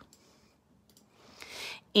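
A few faint clicks from operating a computer, as an item is selected and deleted on screen, then a soft hiss lasting about half a second near the end.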